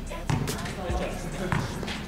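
A basketball dribbled on an outdoor asphalt court, bouncing about twice a second, with men talking over it.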